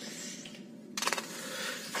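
A pause in the talk, with faint background hiss and a short cluster of quick, light clicks about halfway through.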